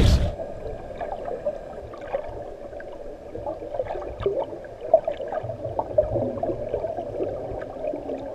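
Muffled underwater sound heard through a camera's waterproof housing: a low, steady water rumble with many scattered small clicks and pops as bubbles rise.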